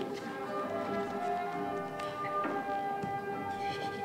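Music with long, steady held notes.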